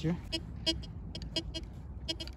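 A Tianxun TX-850 metal detector giving a string of short, irregularly spaced beeps as the coil passes over a buried target. It reads in the 60s–70s, a higher conductivity than the aluminium bottle caps, with iron discriminated out.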